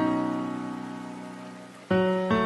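Slow, soft piano music: a held chord fades away, and a new chord is struck just before the end.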